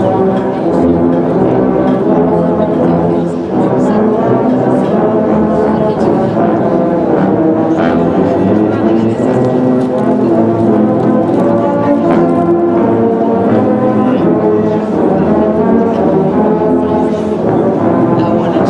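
A massed ensemble of tubas and sousaphones playing together, holding sustained low brass chords that move from note to note.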